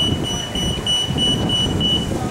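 A high electronic beeping tone, pulsing a few times a second, over a low rumble of street noise.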